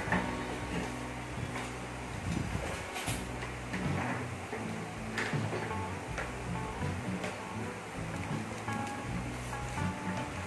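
Karaoke backing music playing from a Megapro Plus karaoke player, a steady pop accompaniment for the song whose lyrics are on screen.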